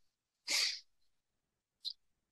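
A person's single short, breathy burst about half a second in, then a faint click near the end; otherwise silence.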